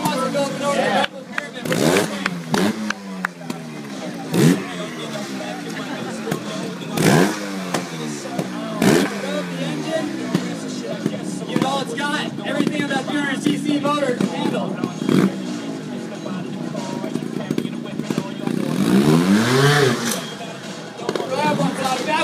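A trials motorcycle engine blipped in short, sharp revs every couple of seconds: throttle bursts used to hop and balance the bike. Near the end comes a longer rise and fall of revs.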